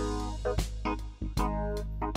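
Instrumental background music with a beat: pitched instruments over a bass line and drum hits.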